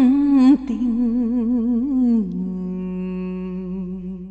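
A woman singing a Vietnamese folk song (dân ca), a drawn-out line with wide vibrato. About two seconds in it drops to a long held low note that slowly gets quieter.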